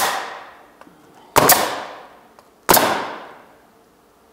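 Pneumatic coil roofing nailer driving nails through an asphalt shingle into the roof deck. One shot lands right at the start, then two more about 1.3 seconds apart, each a sharp crack with a short ringing decay.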